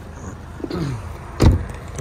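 Front passenger door of a 2010 Ford Kuga being shut, making a single solid thud about one and a half seconds in.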